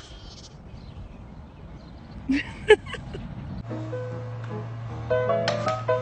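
A goat bleats briefly a little over two seconds in, over a low background rumble. Past halfway the sound changes to music over a steady hum, growing louder toward the end.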